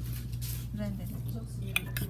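Crockery handled on a table: a short, sharp knock of a ceramic bowl near the end, over faint voices and a steady low hum.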